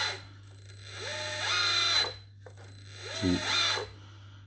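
Hydraulic pump of an RC teleloader model whining as the hydraulic ram tilts the front attachment coupler. The whine starts about a second in, rises briefly in pitch and runs about a second.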